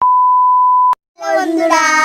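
A steady, high test-tone beep of the kind played over television colour bars lasts about a second and cuts off suddenly. After a brief silence, children's voices shout together in a loud, long held call.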